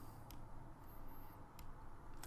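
A few faint, scattered clicks over quiet room tone as points are marked on a computer graph.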